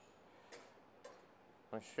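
Two light clicks, about half a second apart, of a knife blade tapping against the rim of a metal saucepan as scraped vanilla seeds are knocked off it into the milk. A man starts speaking near the end.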